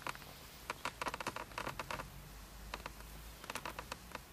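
Falling wet snow pattering on a car's windscreen: irregular light taps that come in small clusters, over a faint low hum.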